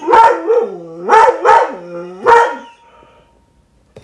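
A dog barking: about four short calls in quick succession, each bending down and back up in pitch.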